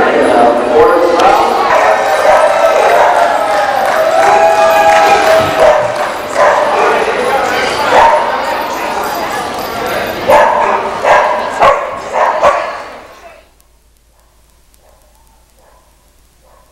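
A dog barking over loud, indistinct crowd voices in a large hall; the sound cuts off sharply about thirteen seconds in.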